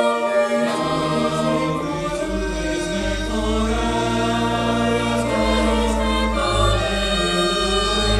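Mixed choir of teenage boys and girls singing together, holding sustained chords that shift every second or two over a low bass line.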